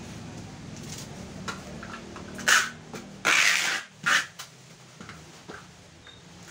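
Packing tape being pulled off a handheld tape dispenser to seal a cardboard box: three rasping pulls, a short one, a longer one and another short one, in the second half.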